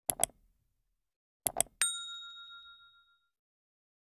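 Subscribe-button sound effects: a quick double click, a second double click about a second and a half in, then a single bright bell ding that rings out and fades over about a second and a half.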